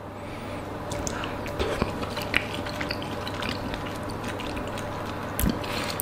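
A person chewing a mouthful of minced-meat bobotie with rice: soft, close mouth sounds with small wet clicks, and a short louder sound about five and a half seconds in.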